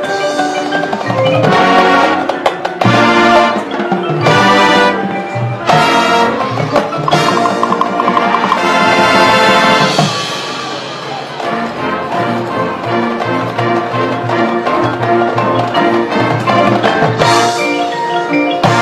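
Marching band playing its field show music: brass over front-ensemble mallet percussion, with loud accented full-band chords in the first half that drop to a softer passage about ten seconds in.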